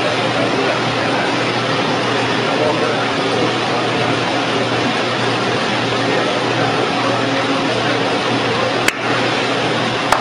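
Hydraulic oil press running: a steady, dense machine noise with a low hum, with a single sharp click near the end.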